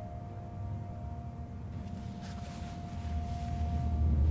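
Quiet film soundtrack: a single held high note of the score lingering over a low rumble that swells toward the end, with a few faint ticks in the last two seconds.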